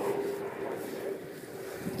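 Outdoor background with no distinct event: a faint steady hum under a low, even hiss.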